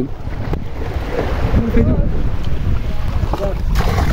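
Wind buffeting the microphone over a steady low rumble of surf on a beach, with faint voices in the background.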